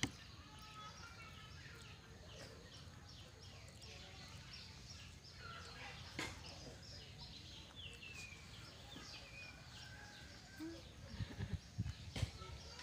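Faint, rapid high chirping animal calls, many short calls sliding down in pitch, repeating throughout. A couple of sharp clicks stand out, and a few low knocks come near the end.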